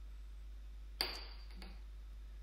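A single sharp metallic clink about a second in, ringing briefly, then a fainter tick: a steel splicing fid knocking on the tabletop as the rope sheath is worked through it.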